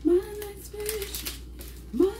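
A woman's voice drawn out in a sing-song tone for about a second, then faint rustling.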